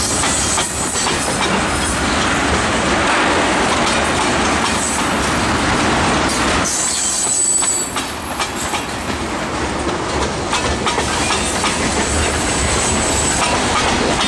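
Freight train of tank cars rolling past close by, wheels clicking steadily over the joints of jointed rail, with a faint high wheel squeal now and then.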